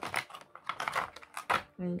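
Packaging of a boxed pair of Christmas baubles being opened by hand: a quick, irregular run of small clicks and rustles, stopping near the end.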